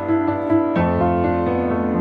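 Piano music with held chords that change a little under a second in.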